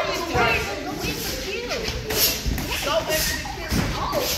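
Several voices talking and calling out over one another in a boxing gym, with two dull thumps, one about halfway through and one near the end.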